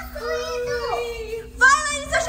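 A voice holding one long, drawn-out note, then a sudden loud, high-pitched cry about a second and a half in.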